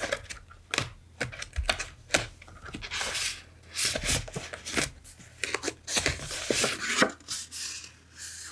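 Hands leafing through a thick stack of paper and card stock pages, with crisp rustles and quick sharp taps and flicks of card edges, irregular throughout.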